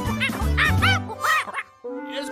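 Cartoon monkey chattering angrily: four or five quick yelps, each rising and falling in pitch, over background music with a steady beat. The sound cuts off shortly before the end.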